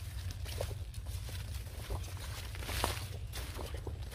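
Footsteps through dry trampled grass and plant stems: irregular soft crunches and rustles over a steady low rumble.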